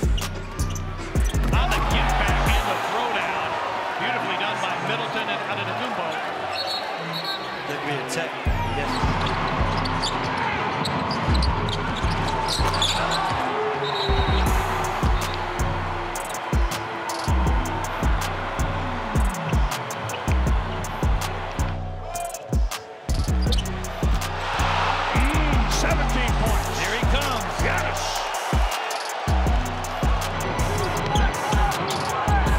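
Background music with a heavy, steady bass beat over basketball game sound: a ball bouncing on a hardwood court. The bass drops out for several seconds early on and briefly twice near the end.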